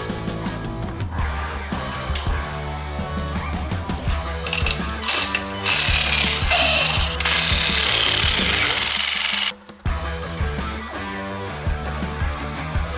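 Rock music playing, with a cordless impact wrench rattling on a wheel's lug nuts for about four seconds in the middle.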